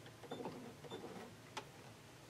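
Faint clicks and rustling as sewing threads are pulled and tucked under the presser foot of a Bernina sewing machine, with one sharper click about one and a half seconds in.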